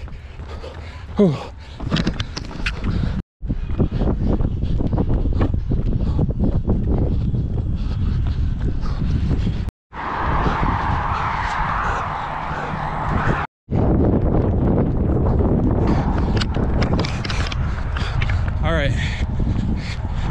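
Wind rumbling on the camera microphone of a runner on the move, with a breathy exhaled "whew" about a second in. The sound cuts out abruptly three times, and between the second and third cut a brighter hiss takes over.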